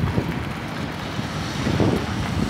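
Steady road traffic noise on a busy city street, a constant low rumble of motor vehicles, with wind buffeting the phone's microphone.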